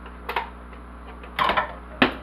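Hand mixer and its metal wire beaters being handled: a couple of light clicks about a third of a second in, then a louder short clatter of clicks about a second and a half in, with another sharp click at the end.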